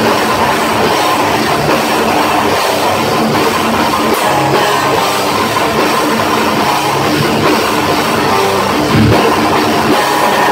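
Metallic hardcore band playing live at full volume: heavily distorted electric guitar over a pounding drum kit, dense and unbroken, as heard from the audience in a small club.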